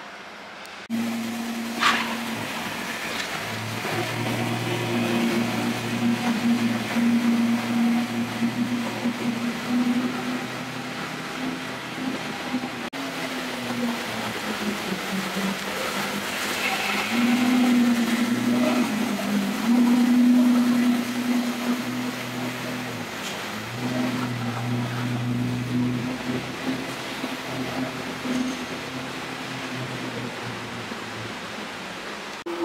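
Ferrari F12berlinetta's 6.3-litre V12 starting about a second in with a short blip, then idling steadily in an underground car park.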